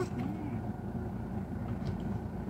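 Car heard from inside its cabin while moving slowly: a steady low rumble of engine and tyre noise.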